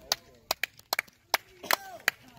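A series of sharp knocks or slaps on a hard surface, about seven in two seconds, irregularly spaced.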